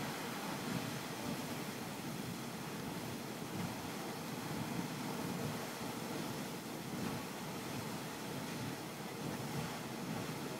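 Grand Geyser erupting: a steady rushing of hot water jetting up and splashing back down, with no pauses.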